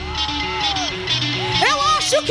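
Live gospel band music with a steady bass, and a voice holding long notes that arch and rise over it.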